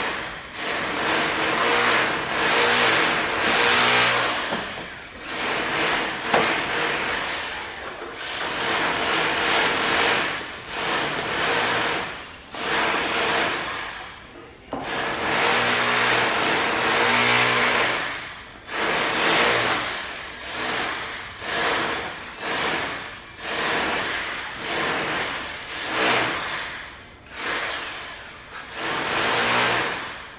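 A small handheld power tool running in repeated bursts of a few seconds with short pauses, worked overhead at the top of a doorway; the bursts grow shorter near the end.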